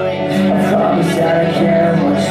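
A rock band playing live, with electric guitar, recorded from the audience in a concert hall.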